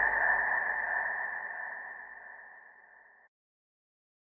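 The final held high note of the closing music, fading steadily and gone a little over three seconds in.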